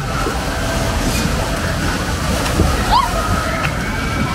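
Water rushing and sloshing steadily along a water ride's channel, with faint voices in the background.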